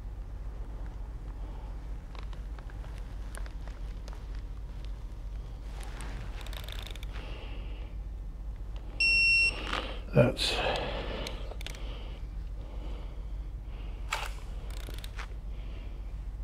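Electronic digital torque wrench gives a single steady high-pitched beep of about half a second, about nine seconds in, as it reaches its set torque of 16 newton-meters on a cam phaser bolt. A sharp metallic click follows about a second later.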